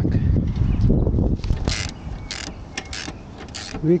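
Socket ratchet wrench clicking in short bursts, about three strokes a second, while a bolt on the car's engine mount is tightened by hand.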